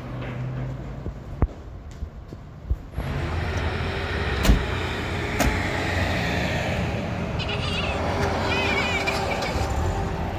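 An old Paykan sedan's engine running at idle, the rumble rising sharply about three seconds in, with two sharp thuds of car doors shutting about a second apart near the middle.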